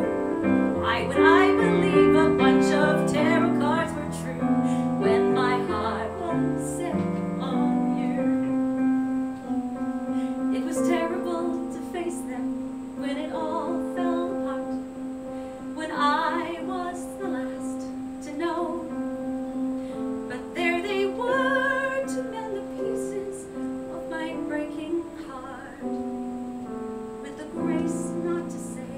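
A woman singing a musical-theatre ballad with vibrato, accompanied by piano. The piano is busiest for the first several seconds, then settles into held chords under the voice.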